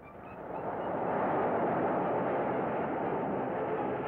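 Cartoon sound effect of a huge ocean wave crashing down: a rushing noise that swells over about the first second, then holds steady.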